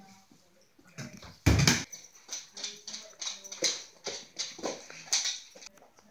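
A pet dog making a series of short sounds about every half second, with one heavy thump about a second and a half in.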